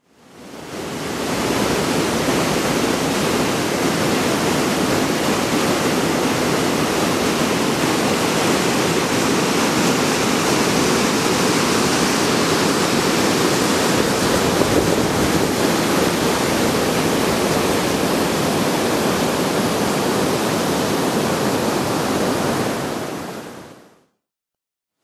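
Steady rush of fast-flowing water, an even, loud hiss that fades in over the first second or two and fades out near the end.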